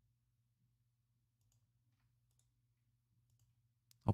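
Near silence, with a few very faint computer mouse clicks.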